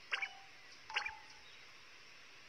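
Two faint, short bird chirps about a second apart, part of a cartoon's background birdsong, over an otherwise quiet soundtrack.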